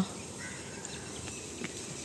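Quiet outdoor background ambience, a faint steady hiss with no distinct sound standing out.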